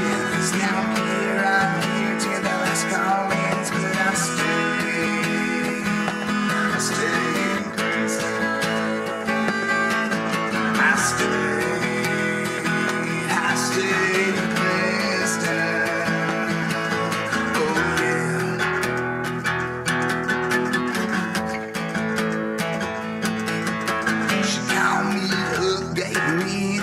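Acoustic guitar strummed steadily through an instrumental break, with no singing.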